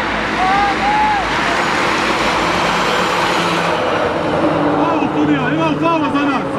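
Young players shouting on an outdoor football pitch, over a loud rushing noise that swells early on and fades about four seconds in; the shouts crowd together near the end.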